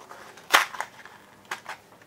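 Card packaging of picture-hanging wire being handled in the hands: one sharp click about half a second in, then a few fainter clicks and rustles.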